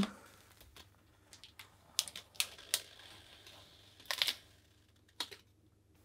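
Faint, scattered light clicks and taps of fingernails picking at the edge of a stencil on a wet-painted canvas, with a small cluster of them about four seconds in.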